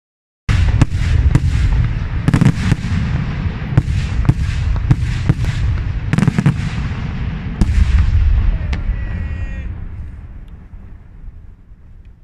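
Daytime fireworks: a rapid barrage of sharp aerial shell bursts and bangs over a continuous rolling rumble. It starts suddenly about half a second in and thins out after about eight seconds, fading to a low rumble near the end.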